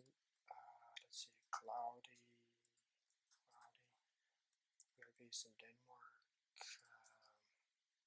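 Faint, low muttering from a man's voice in short broken phrases, with a few soft clicks between them; the rest is near silence.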